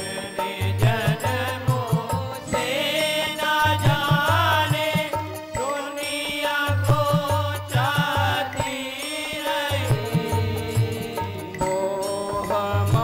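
Hindu devotional song (bhajan): a solo voice sings a melody with wavering, ornamented notes over sustained harmonium tones, with a drum keeping a regular low beat.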